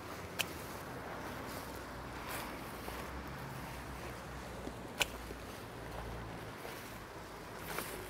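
Hand snips cutting Mexican bush sage stems: two short, sharp clicks, one about half a second in and one about five seconds in, over a faint, steady outdoor hush.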